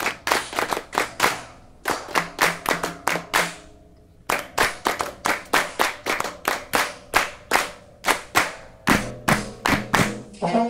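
Hand claps beating out a rhythmic pattern, about two to three claps a second, breaking off briefly about four seconds in.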